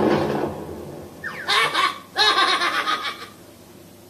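A cartoon character laughing in two bursts, a short one followed by a longer one of about a second, with a quick rise in pitch just before.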